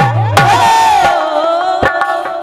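Live devotional folk music: a woman sings one long, loud held note that slowly falls in pitch over the steady drone of a harmonium. The dholak drops out under the held note and strikes again near the end.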